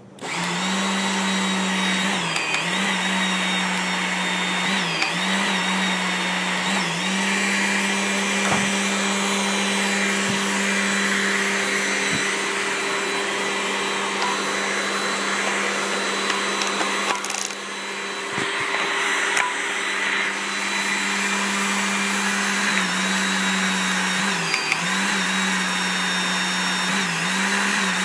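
Hydraulic torque pump starting up and running with a steady hum, driving a hydraulic torque wrench that is tightening a nut on a BOP spool flange. The hum dips briefly in pitch every two to three seconds near the start and again near the end.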